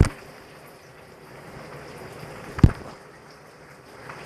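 A running shower gives a steady hiss in the background. Over it come a short knock right at the start and a single louder knock about two and a half seconds in, like the phone or jar being handled.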